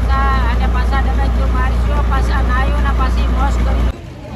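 A man talking over a steady low engine rumble. Both cut off abruptly just before the end.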